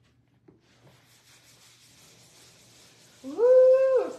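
Faint soft hiss of a foam applicator pad being rubbed over a leather chair seat, then, near the end, a loud drawn-out vocal "ooh" from a woman, rising briefly and then held on one pitch.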